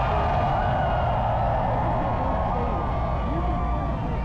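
Crowd cheering and the mixed chatter of many voices, over a steady low rumble.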